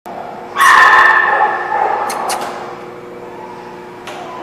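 A dog gives a loud, drawn-out cry about half a second in, holding one pitch and fading over a second or so. A couple of short, sharp sounds follow.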